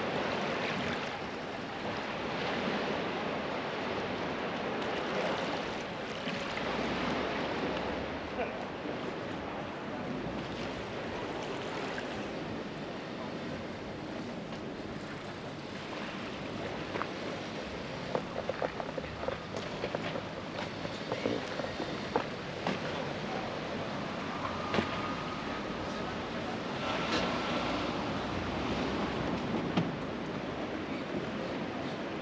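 Seaside ambience: gentle surf and wind on the microphone, with scattered crunching footsteps on gravel in the second half.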